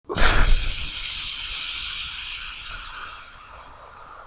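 Title-card sound effect: a sudden whoosh with a low rumble, then a steady hiss that fades away over the next few seconds.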